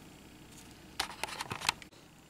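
A quick run of light plastic clicks and taps about a second in, from the plastic parts of a Transformers combiner toy being handled.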